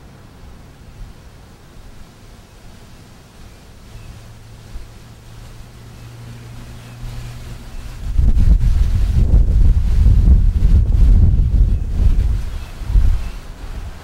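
Wind buffeting the camera microphone: loud, irregular low rumbling from about eight seconds in until near the end, over a faint steady low hum before it.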